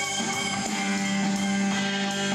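Live band music led by an electric guitar, playing held, sustained notes at a steady level.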